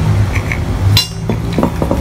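Metal brake caliper parts clinking as they are handled and set down: a few light clinks from about halfway through, over a steady low hum.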